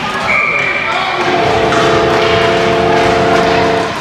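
A short steady referee's whistle blast, then a goal horn sounding a held chord for about two and a half seconds that cuts off sharply, signalling the goal just scored, over crowd noise.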